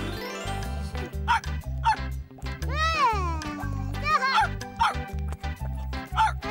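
Cartoon dog barking and yipping in short high calls, with one longer arching whine about three seconds in, over children's background music with a steady bass line.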